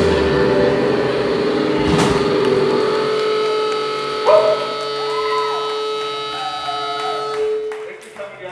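A rock band's closing chord ringing out: a cymbal crash about two seconds in, then held guitar and amplifier tones, with a few bending notes over them, that fade away at the end.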